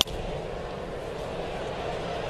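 A single sharp crack of a wooden baseball bat hitting a pitched ball, right at the start, followed by a steady murmur of the ballpark crowd.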